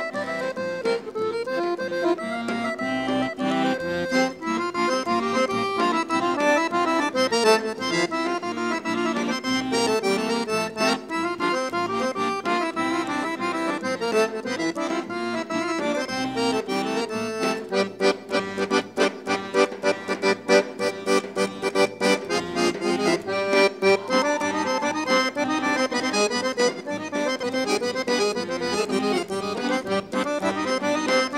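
Accordion-led Bulgarian folk dance music with a brisk, steady beat. The beats grow sharper and louder for a few seconds a little past halfway through.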